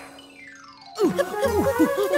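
Cartoon sound effects made of pure electronic tones. One whistle-like glide falls in pitch over about a second, then a quick run of short, bouncy up-and-down chirps follows.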